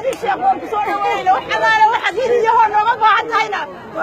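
Speech: people talking, their voices overlapping.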